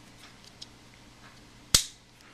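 Victorinox Tinker Swiss Army knife with a tool snapping shut into the handle: one loud, sharp click near the end, with a few faint ticks before it.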